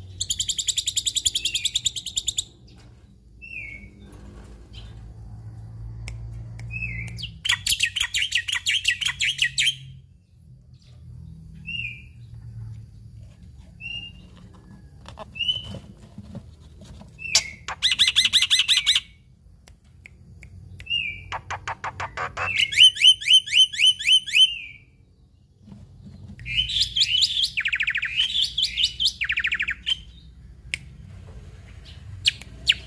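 Black-winged myna (jalak putih) singing: about five bursts of rapid, repeated chattering notes, each lasting one to three seconds, with short single falling whistles in between.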